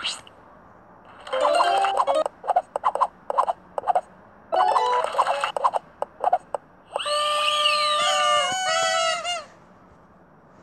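Tablet game sound effects: two short stepped chime jingles, each followed by a quick run of clicks as the matching tiles pop onto the board, then about seven seconds in a celebratory fanfare of held tones and swooping whistles marking the completed game, which stops near the end.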